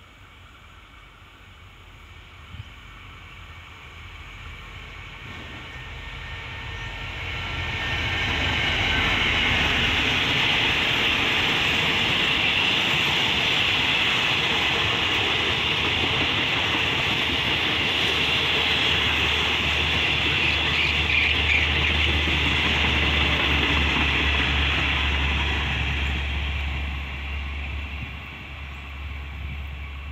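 A passenger train hauled by a QSY-class diesel-electric locomotive passing close by. The engine and the wheels on the rails build up over the first several seconds, stay loud for about twenty seconds as the coaches roll past, then fade near the end.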